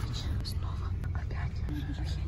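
Coach engine running with a steady low rumble, heard from inside the passenger cabin, with faint hushed voices over it.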